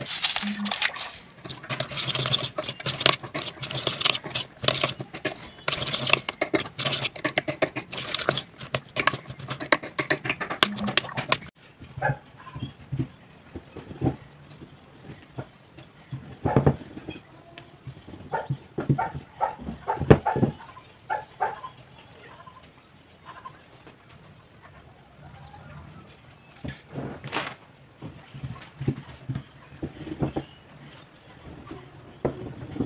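Momo filling of minced pork and chopped onion being mixed in a steel pot: a dense run of wet clicks and scrapes that stops abruptly about eleven seconds in. After that comes a wooden rolling pin rolling out dough wrappers on a wooden board, with scattered soft knocks and taps.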